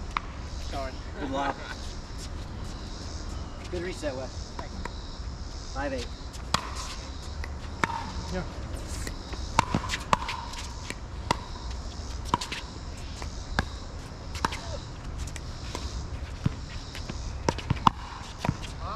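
Pickleball rally: paddles striking a hard plastic pickleball, giving sharp pops at an irregular pace of roughly one a second from about six seconds in, along with the ball bouncing on the hard court.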